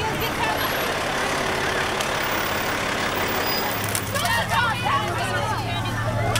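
Pickup trucks towing parade trailers past: a dense rush of vehicle and street noise. About four seconds in, a steady low engine hum sets in, with several voices calling out over it.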